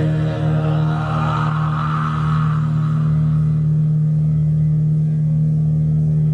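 A heavy-metal band's amplified electric guitars and bass hold a single low note that rings steadily, as a sustained final chord of a live song.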